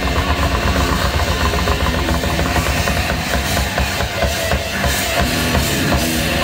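A rock band playing live and loud: drum kit, electric guitar and bass guitar through stage amplifiers, the drums pounding steadily.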